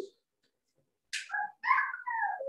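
About a second of near silence, then a short, high-pitched vocal cry whose pitch glides up and down, in a few brief pieces.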